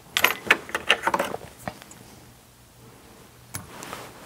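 Light clicks and taps from fly-tying tools and hardware being handled at the vise: a quick run of them in the first second, then one more click near the end.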